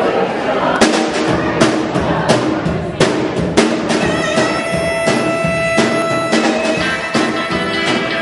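A live band kicks into a song: a drum beat with strikes about every 0.7 s starts about a second in, and from about four seconds in a harmonica played close into a vocal mic plays held notes over it.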